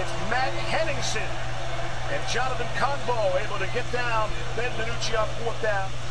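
Football game broadcast playing at low level: commentators' voices talking continuously over a steady low background hum.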